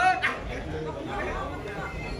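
Chatter of several voices, with one louder call in the first half-second.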